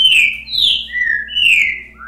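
Recorded songbird song of the 'boca mole' type played back through a computer: a run of clear whistled notes, most sliding downward, about two a second, the last one rising.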